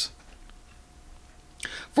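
A pause in a man's speech: faint room noise with a thin steady hum, then a short breath near the end before he speaks again.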